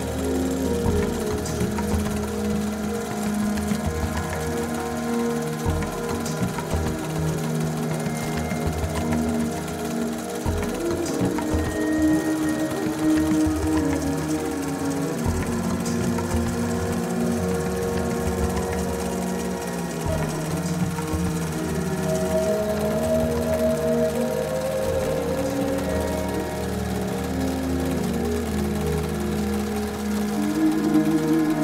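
Background music mixed with an embroidery machine stitching steadily, a fast even chatter of needle strokes under the music.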